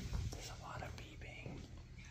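A person whispering, over a steady low hum, with a soft thump right at the start.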